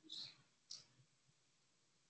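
Near silence: faint room tone on a meeting recording. In the first second it is broken by two short, faint hissing sounds, the first with a trace of voice in it.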